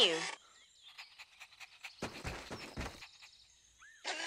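Cartoon sound effect of leaves rustling in a bush, a burst about a second long starting about two seconds in, after a second and a half of faint rapid ticking. A short rising chirp comes just before the end.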